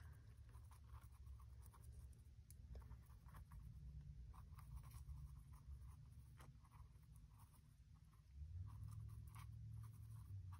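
Faint, scattered scratching of a water brush's bristles worked over pencil marks on a rough, gesso-textured book cover, over a low steady hum.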